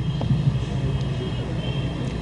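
Steady low background rumble with no clear events in it.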